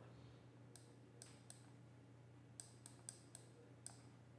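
Faint, irregular clicks, about ten of them, from handwriting input as numbers and units are written onto the on-screen slide, over a steady low electrical hum.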